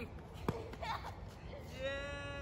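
A single sharp knock about halfway through, from the Nerf ball-blaster fight, then a boy's voice in a long, held call near the end.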